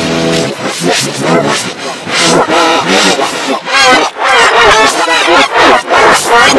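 Reversed, pitch-shifted audio of a boy's shouting, layered in the 'G-Major' meme effect, loud and garbled with wavering pitch. It opens with a brief held tone.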